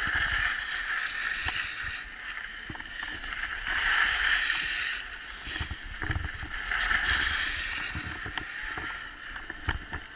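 Skis scraping and hissing over groomed snow, swelling with each turn about every three seconds, with wind buffeting the microphone.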